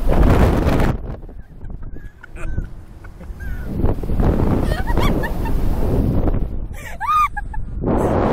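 Two riders on a slingshot ride laughing and shrieking, with gusts of wind noise on the microphone as the capsule swings; a high, rising-and-falling squeal near the end.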